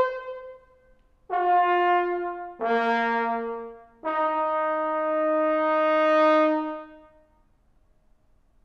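Unaccompanied trombone playing a fanfare. A held note dies away at the start. After a short gap come three notes: the second is lower and louder, and the third is held for about three seconds before it is released.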